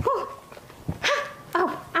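A dog barking: several short barks, each rising and falling in pitch.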